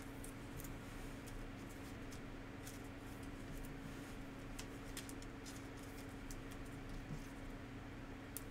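Trading cards being handled and put into a clear plastic sleeve: faint scattered clicks and rustle over a steady low hum.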